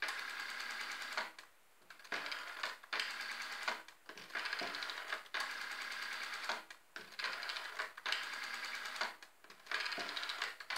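Rotary telephone dial being dialled one digit after another: each release of the dial gives about a second of buzzy, rapid ticking as it spins back, with short pauses between digits.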